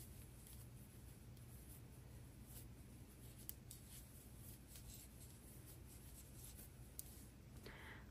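Near silence: faint rustling of chunky yarn and a few light clicks of a large plastic crochet hook as double crochet stitches are worked.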